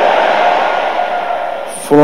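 A large congregation's massed voices shouting together, a dense crowd sound that fades steadily over about two seconds.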